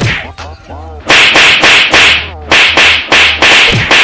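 A rapid series of loud whip-like smacks, about eight in under three seconds, starting about a second in, over a low steady hum.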